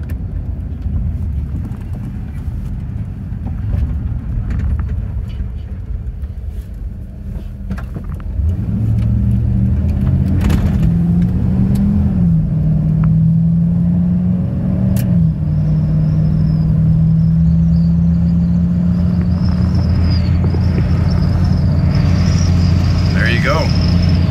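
Inside the cab of a 1987 Chevrolet C20 pickup on the move: engine drone with wind and road noise, the wind noise from a very windy day. About eight seconds in, the engine hum becomes louder and steadier. Its pitch rises and drops back twice around the middle, then holds steady.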